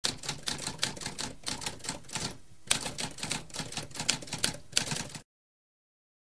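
Typewriter keys clacking in a quick, uneven run of strikes, with a brief pause about two and a half seconds in; the typing stops abruptly near the end.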